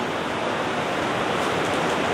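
A steady, even hiss of noise with no pitch or rhythm.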